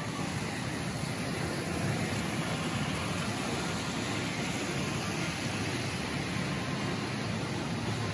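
Steady outdoor traffic noise, an even low rumble with hiss and no distinct events.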